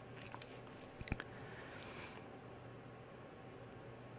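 Quiet room tone from a desk microphone: a steady low hum and faint hiss, with a couple of faint clicks about a second in.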